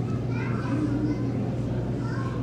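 Faint background chatter of other people, children's voices among them, over a steady low hum.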